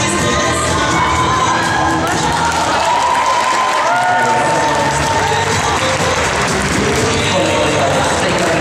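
Spectators cheering and shouting for the dancers during a Latin dance competition heat, over dance music with a steady beat.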